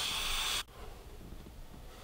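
A vape draw: air hissing through the airflow of a rebuildable dripping atomiser as vapour is pulled in, cutting off about two-thirds of a second in. A much fainter breathy hiss follows as the cloud is exhaled.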